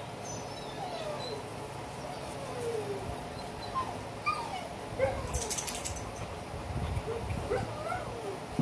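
A dog whining: drawn-out falling whines at first, then shorter whines coming more often in the second half, with a brief rattle near the middle.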